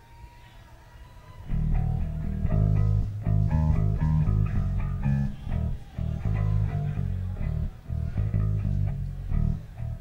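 Electric bass and electric guitar played loosely between songs, starting about a second and a half in, with the bass notes loudest and no steady beat.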